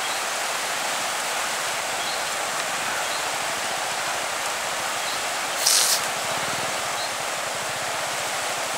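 Steady, even rush of a fast-flowing river in flood, its muddy water running over rapids. About five and a half seconds in, a brief louder hiss cuts in for half a second.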